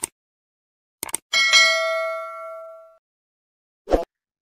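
Subscribe-button sound effect: a click at the start and a quick double click about a second in, followed by a bright notification-bell ding that rings out and fades over about a second and a half. A short burst of sound follows near the end.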